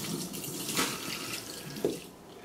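Kitchen faucet running cold water onto a zucchini flower held in the stream as it is rinsed, a steady splashing hiss. A short knock comes just before the water stops at the end.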